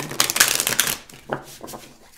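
A deck of oracle cards riffle-shuffled by hand: a rapid fluttering run of card clicks lasting about a second, then a few quieter clicks.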